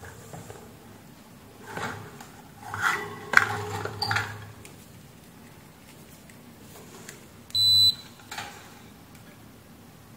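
A digital multimeter gives one short high beep about three-quarters of the way through. Earlier there are a couple of seconds of scattered clicks and rustling clatter as the test leads and fan motor parts are handled.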